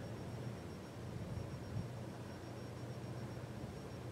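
Steady low hum with a faint even hiss: background room tone.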